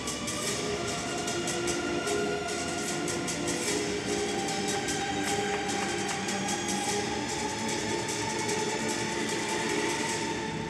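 Figure-skating program music with sustained droning tones under a dense, scratchy, rattling texture. A higher held tone slowly rises from about four seconds in.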